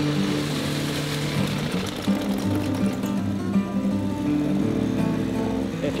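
Background music over an old Johnson 40 two-stroke outboard motor running with its lower unit in a barrel of water, its propeller churning the water.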